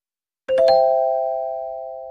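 Chime sound effect: two quick bell-like notes about a fifth of a second apart, half a second in, then a clear ring that fades slowly.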